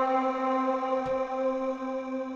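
Sustained ambient pad from a Waves CR8 sampler preset, a vocal-effect 'blur' sample played through in launch mode: one steady pitch rich in overtones, slowly fading out.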